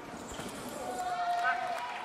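Arena background with faint voices. About a second in, a steady held tone lasts for about a second.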